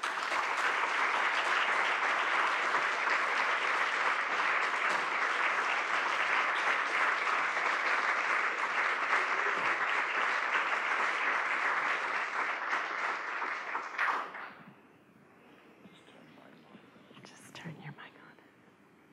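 Audience applauding steadily for about fourteen seconds, then dying away quickly. A few faint knocks follow near the end.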